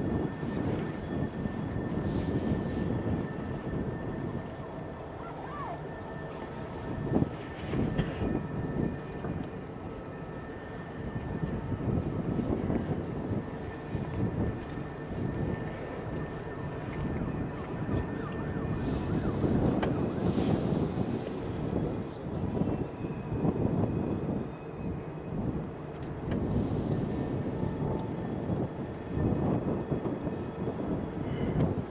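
Gusty wind on the microphone over a low, uneven rumble across the water, with one brief knock about seven seconds in.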